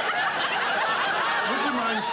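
Studio audience laughing, many voices at once, steady throughout.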